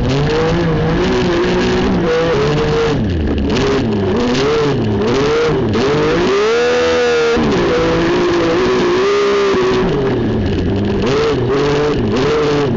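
Racing car engine heard from inside the cockpit, its note rising and falling repeatedly as the throttle is opened and lifted through a run of corners, with one longer climb and drop about halfway through.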